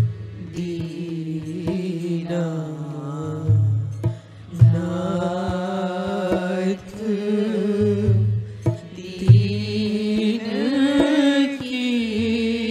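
Hindi devotional bhajan: a voice singing a slow melody with long, wavering held notes. It is backed by percussion, with deep thuds every few seconds and lighter strokes between them.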